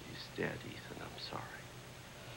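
Speech only: a man saying "She's dead" quietly, over a faint steady hum.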